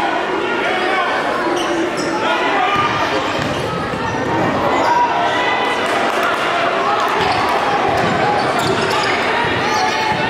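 Basketball dribbled on a hardwood gym court, the bounces sounding through the steady talk and calls of players and crowd in the gym.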